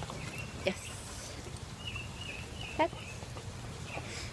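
Two short spoken words over small birds chirping intermittently in the background and a steady low hum.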